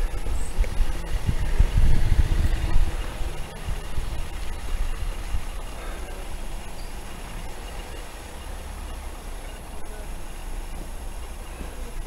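Unsteady outdoor low rumble of street traffic and wind on the camera microphone, heaviest for the first three seconds or so, then steadier and quieter.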